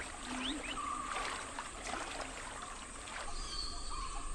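Quiet jungle ambience: a steady soft hiss with a few faint, short calls scattered through it.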